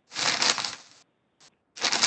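Two short bursts of crackling noise over a video-call audio line, the first lasting about a second, the second starting near the end.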